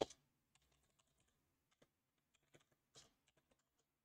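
Faint computer-keyboard typing: scattered, irregular keystrokes, a dozen or so, with a slightly louder tap at the very start.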